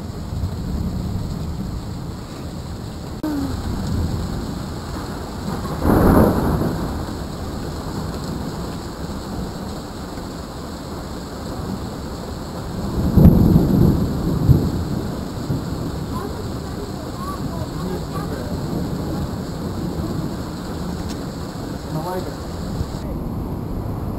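Steady heavy rain falling on the street and porch during a thunderstorm. A thunderclap comes about six seconds in, and a longer, louder rumble of thunder about thirteen seconds in.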